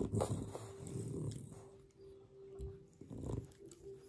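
French Bulldog making low grunts and snuffling breaths while its lips and jowls are handled. The loudest bursts come in the first second and again after about three seconds.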